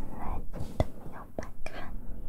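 A woman whispering close to the microphones, breathy and broken into short phrases, with a few sharp clicks in between.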